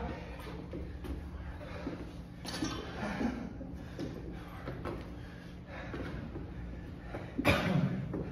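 Scattered thuds and scuffs of bodies dropping to and springing up from a gym floor during burpees and lunges, with a louder thud or exhale near the end, over a low steady hum.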